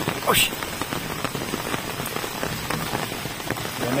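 Steady rain falling and pattering on surfaces, with many small separate drop hits.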